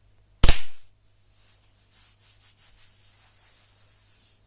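A single loud, sharp impact close to the microphone about half a second in, dying away quickly, followed by faint rustling.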